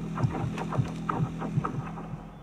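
Film trailer end-card sound design: a low pulsing throb repeating about four or five times a second over a steady hum.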